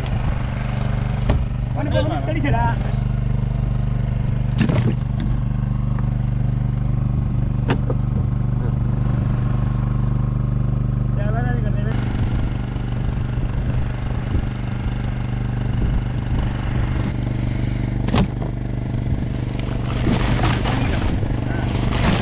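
A boat engine running steadily with a low, even hum, with brief voices calling out now and then and a few sharp knocks.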